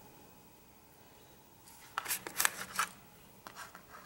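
Handling noise from the aluminium APT SmartCarb carburettor body being picked up and moved on a shop towel: quiet at first, then a short cluster of sharp clicks and rustles about two seconds in, with a few fainter ones near the end.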